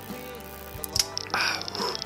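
A man sips from a glass jar, with a small click of the glass about a second in and a breathy exhale after the drink, over soft background music.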